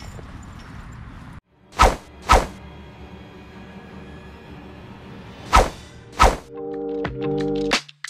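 Low outdoor background for the first second and a half, then an edited title-card music sting: two pairs of heavy hits over a faint held tone, followed by a music track coming in about six and a half seconds in.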